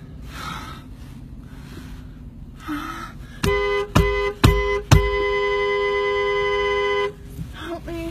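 Car horn sounding three short honks in quick succession, then one long blast of about two seconds, over the low steady rumble of the car driving.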